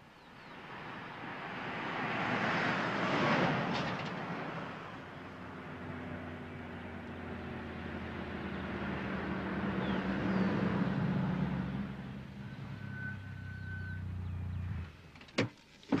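Mercedes-Benz W123 station wagon driving past, its sound swelling and then falling away, then running steadily at low speed as it pulls up. The engine stops shortly before the end, and a sharp click follows.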